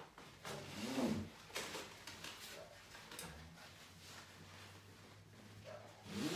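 Faint rustling of nylon swing straps as they are pulled and adjusted, with a short, low hummed effort sound about a second in.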